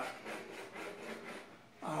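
Pencil scratching over a stretched canvas in a run of quick, faint sketching strokes.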